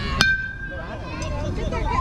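A metal baseball bat hits a pitched ball: one sharp ping about a fifth of a second in, ringing out for about half a second. Voices from the field and stands follow.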